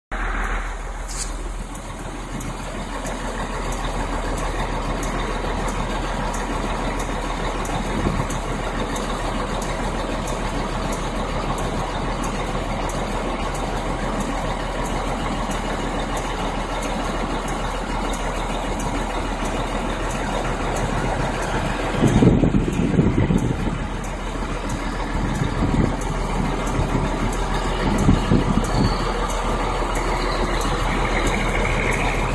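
Steady traffic noise dominated by a semi truck's diesel engine running, with a brief louder low rumble about two-thirds of the way through.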